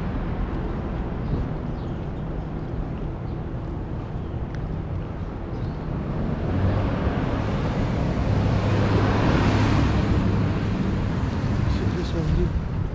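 City street traffic: a low rumble, then a motor vehicle drawing near from about six seconds in, its engine hum and tyre noise swelling to a peak a little before ten seconds and easing off again.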